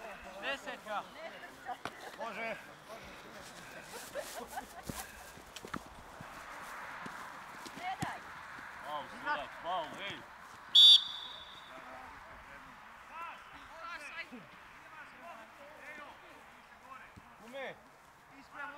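A short, sharp referee's whistle blast about eleven seconds in, over distant shouting from players on a football pitch. The ball is kicked with a few dull knocks earlier on.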